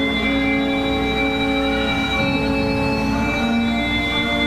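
Organ playing slow, sustained chords, the held notes shifting to a new chord every second or two.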